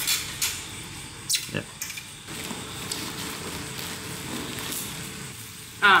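A few light clicks and knocks as the metal and plastic parts of a telescope's altazimuth mount and tripod are handled and fitted together, mostly in the first two seconds, over a steady low background hiss.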